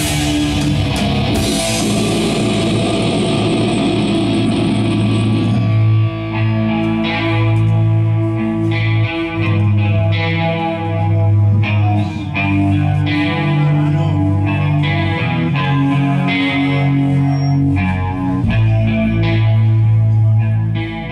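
Doom metal band playing live, with drums and crashing cymbals under distorted guitars for the first few seconds. About six seconds in the drums drop out, and distorted electric guitars and bass carry on alone with slow, held notes.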